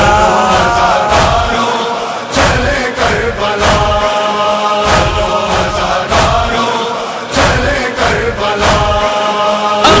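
Male chorus of a Muharram nauha chanting a held, wordless drone between verses, over a steady beat of heavy thumps about one and a half per second, the matam (chest-beating) rhythm that carries a nauha.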